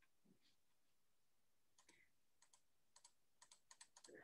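Near silence, then from about two seconds in a run of faint, quick, irregular clicks of typing on a computer keyboard.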